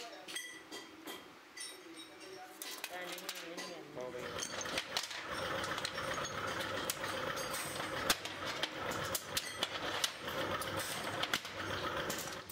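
Workshop noise: from about four seconds in, a machine runs steadily under frequent sharp metal clicks and clinks as brake-shoe parts and springs are handled on a steel bench, with voices in the background early on.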